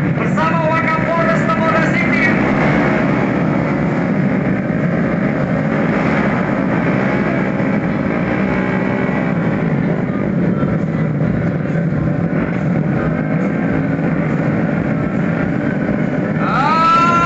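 A pack of tuned automatic scooters' small single-cylinder engines running together as the bikes roll slowly forward, a loud, steady, dense drone.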